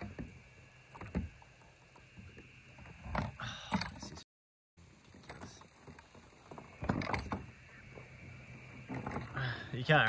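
Small splashes and knocks of water and gear against plastic kayak hulls as a Murray cod is held in the water for release, in scattered short bursts. The sound cuts out completely for about half a second just after four seconds in.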